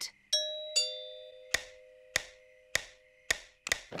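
Two-note cartoon doorbell chime, ding then dong, ringing out, followed by five short sharp taps about half a second apart.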